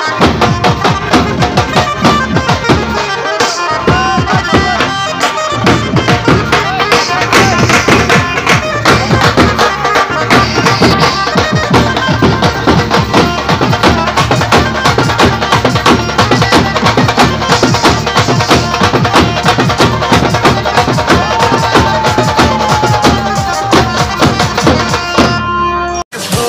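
Bengali band party (bentpati) playing a folk tune live: steel-shelled bass drums and other drums beat a fast, dense rhythm under a lead melody line that rises and falls. The music cuts off suddenly at the very end.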